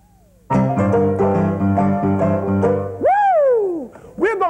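Piano playing fast, evenly repeated chords in rock and roll style, starting about half a second in. Near the end the piano stops and a man gives one high whoop that falls steeply in pitch.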